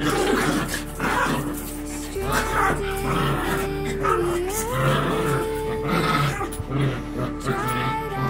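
Small fluffy dogs play-fighting and growling, over background music of long held notes.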